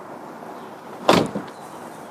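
A car door is shut with a single loud thump about a second in, over a steady low background hiss.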